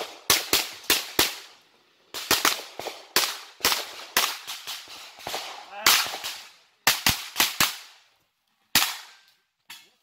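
A 9x19 mm blowback pistol-calibre carbine firing rapid shots, mostly in quick pairs and short strings, with brief pauses between groups.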